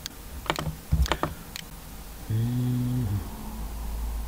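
Computer keyboard keystrokes, a handful of separate clicks in the first second and a half. Then a short, steady hummed "mm" from a man's voice, lasting under a second.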